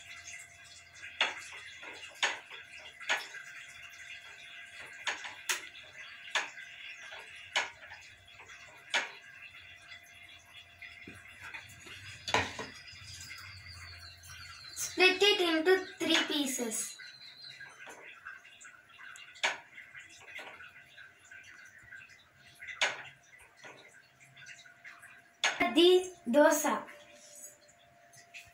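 Scattered light knocks and clinks of a steel batter bowl and ladle against a dosa pan and gas stove, over a steady hiss. A voice speaks briefly a little past halfway.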